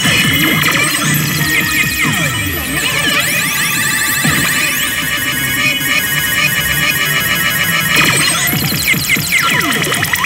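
Re:Zero pachislot machine playing its loud electronic bonus music and sound effects while the reels spin, with many rising and falling pitch sweeps; the clatter of other slot machines in the hall mixes in.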